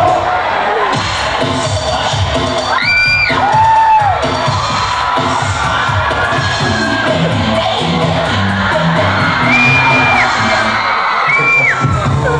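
Dance music played over a gym sound system, with a large crowd cheering and shouting throughout and a few high whoops rising out of it.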